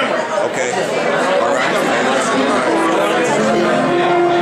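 Many people talking at once in a crowded hall. Music with steady held notes comes in under the chatter in the second half.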